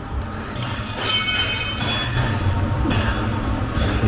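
A high-pitched squeak, about a second and a half long, from hands working among the plastic parts and wiring of a car's engine bay, over a steady low hum.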